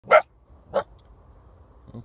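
A canine barking: two short, loud barks about two-thirds of a second apart.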